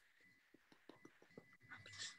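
Near silence: room tone over a call line, with a few faint clicks.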